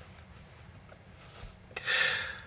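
Quiet room tone, then near the end a man's short, breathy laugh: a sharp puff of breath through a grin.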